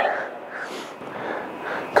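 A man breathing hard after exercise, a few soft audible breaths.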